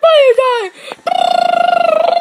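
A child's voice making a loud falling cry, then a long held high cry at a steady pitch with a fast slight wavering.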